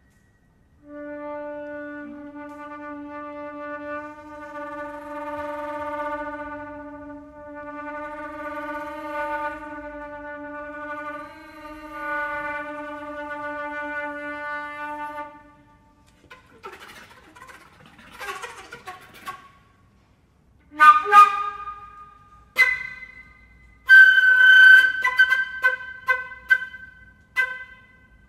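Concert flute in a contemporary piece holds one long low note for about fifteen seconds, its loudness swelling and ebbing. Breathy air sounds follow, then a string of short, sharp accented notes.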